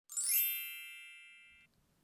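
A bright intro chime: a quick upward run of bell-like tones that rings out together and fades, cut off suddenly after about a second and a half.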